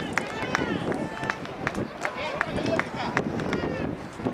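Indistinct voices calling out across an open-air soccer field, with irregular sharp clicks over a steady outdoor background noise.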